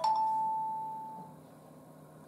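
Jio Phone F120B's startup chime from its small speaker: a couple of quick notes, then one long ringing tone that fades out over about a second and a half, as the phone boots after a factory reset.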